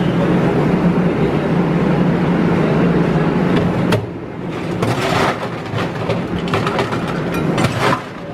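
A steady low machine hum for about the first half, then ice cubes scooped from a steel ice bin and clattering into a plastic cup in irregular rattles.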